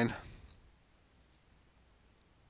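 The last of a man's voice dies away, then near silence with two faint computer mouse clicks a little over a second in.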